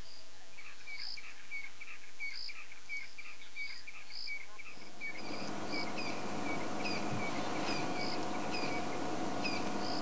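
Evening bush chorus: small animals giving repeated short chirping calls, a couple each second. A steady rushing noise comes up about halfway through.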